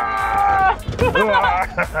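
A person's voice: one long held vocal note, then after a short break a quick, wavering, warbling vocal sound.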